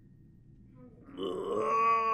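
A man's long, drawn-out vocal groan as he stretches his arms overhead, starting about a second in and holding a nearly steady pitch.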